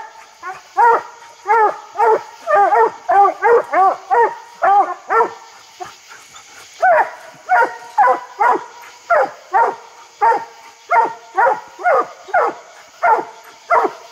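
Coonhounds barking treed at the base of a tree: a steady string of short, arching barks about two a second, the voices of two dogs overlapping at times, with a brief lull about six seconds in.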